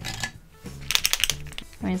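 A Posca paint marker being handled: a quick run of about six sharp clicks lasting about half a second near the middle, over steady background music.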